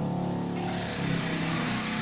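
A motor vehicle's engine running and passing by, with a hiss that swells in about half a second in and holds.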